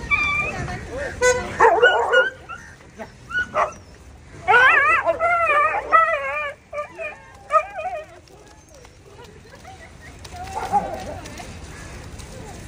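Several street dogs yelping and whining at feeding time, with high, wavering cries. There is a burst in the first two seconds and a longer, louder run from about four and a half seconds in, then it quietens.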